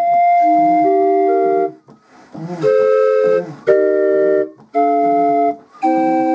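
A 20-note direct-action Castlewood busker organ, hand-cranked, playing held chords on its pipes. There is a short break in the music about two seconds in, and brief gaps between the later chords.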